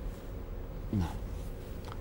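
A pause in a man's speech: low room tone with one short falling vocal sound from him about a second in.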